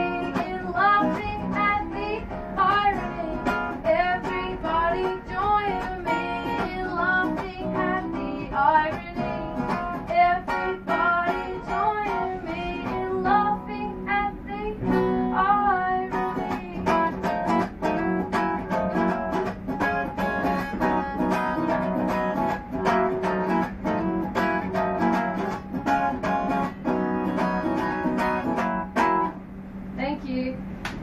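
A guitar strummed live with a woman singing over it for roughly the first half, then strumming carrying on with little or no voice. The song stops just before the end.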